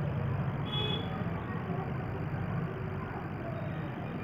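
Steady low background hum or rumble, with a brief faint high squeak about a second in.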